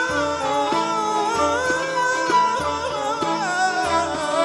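A man sings an Arabic folk melody with ornamented, wavering lines, backed by a Middle Eastern ensemble. A low drum keeps a steady beat underneath.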